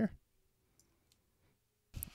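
Near silence in a pause of a voice-over, with a couple of faint short clicks about a second in.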